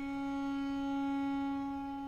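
Solo violin holding a single long bowed note, swelling slightly and then easing off.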